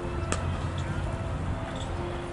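A single sharp crack of a cricket bat striking the ball, about a third of a second in, over a steady low rumble.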